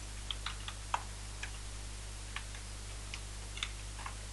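Computer keyboard keystrokes: about ten scattered, unhurried key clicks as a word is typed, over a steady low hum.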